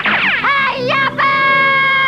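Cartoon soundtrack effect: a high, whistle-like pitched tone glides steeply down and swoops. About a second in it settles into one long, steady held note.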